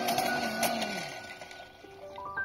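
Hand-cranked fire blower whirring and then slowing and fading out over the first second or so. Soft background music with held notes continues.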